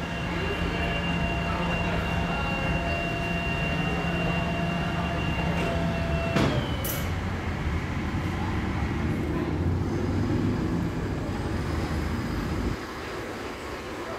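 Tilt-tray tow truck running with a steady hum and whine, then a sharp click and short hiss about six seconds in. Its engine then pulls away with the loaded car, running louder around ten seconds before dropping off near the end.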